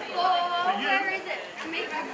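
Indistinct chatter and calls from people near the sideline, with one raised voice drawn out in the first half.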